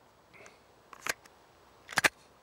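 Sharp mechanical clicks from a semi-automatic pistol being handled: a pair of clicks about a second in and a louder pair near the end.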